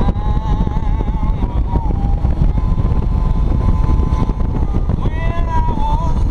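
Touring motorcycle running at road speed, with heavy wind rushing over a helmet-mounted microphone; a wavering high tone runs on top of it.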